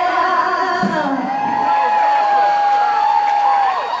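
A singing server's voice belting a Broadway-style song, holding one long high note from about a second in until just before the end, when it falls away.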